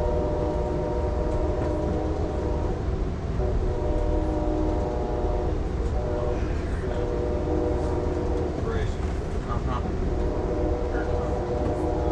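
Amtrak locomotive's multi-chime air horn sounding a chord in long held blasts with short breaks, heard from inside the passenger car. The train's running rumble goes on underneath.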